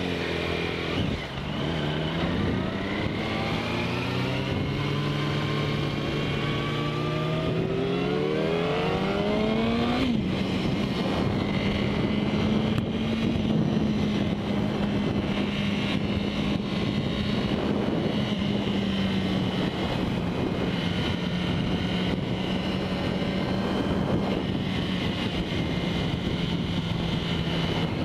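Sport motorcycle engine pulling away, its revs climbing for several seconds, then dropping sharply about ten seconds in as it shifts up. After that it runs at a steady cruise, with wind rushing over the camera microphone.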